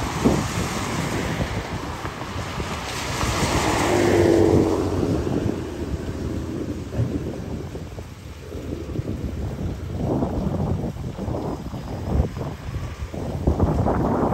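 Car passing on a wet road, the hiss of tyres on wet pavement swelling to a peak about four seconds in and fading away, with wind rumbling on the microphone.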